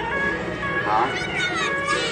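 Suona (Chinese shawm) of a procession band playing sliding, wavering nasal notes over sustained held tones, with a wobbling glide about halfway and rising sweeps near the end.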